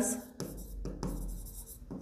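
Stylus writing on the glass face of an interactive display board: faint rubbing with a few light taps as a word is handwritten.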